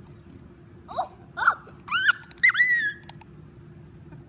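A girl's high-pitched squeaky vocal noises: a few short rising squeals, then a longer, higher squeal held and falling away near the three-second mark.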